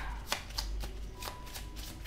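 A deck of tarot cards being shuffled by hand: a quick run of short card slaps and flicks, several a second.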